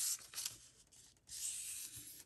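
Paper being handled and rubbed on a collaged journal card: a brief rustle at the start, then a dry rubbing sound lasting under a second in the second half, as something slides across the paper.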